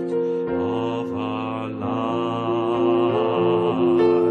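Slow Christian worship song: a singing voice holding long notes with vibrato over sustained accompanying chords.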